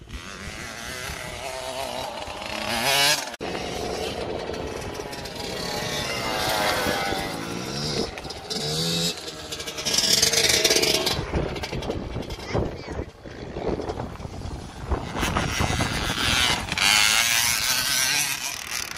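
A KTM 65 two-stroke single-cylinder motocross bike being ridden on a dirt track. Its engine revs up and down with the throttle in repeated rising and falling sweeps, with the sound breaking off suddenly where clips are joined.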